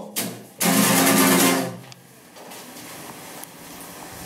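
An acoustic guitar strummed once about half a second in, the chord ringing for about a second before dying away to a quiet stretch.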